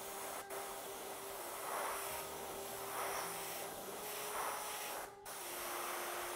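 Iwata Eclipse HP-BCS bottom-feed airbrush spraying paint: a steady hiss of air that swells and eases several times, about once a second, as the trigger is worked.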